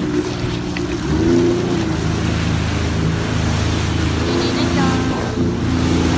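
Jet ski engine running steadily under way, getting louder about a second in, with wind and water noise on the microphone. A brief voice is heard near the end.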